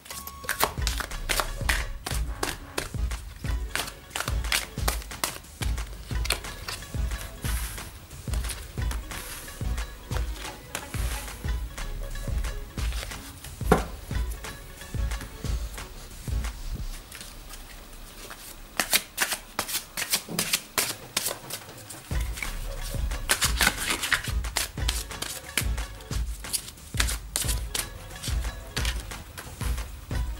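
Tarot cards being shuffled, slid and dealt onto a cloth-covered table, with many crisp card snaps and flicks. Background music with a steady low beat plays underneath and drops out for a few seconds past the middle.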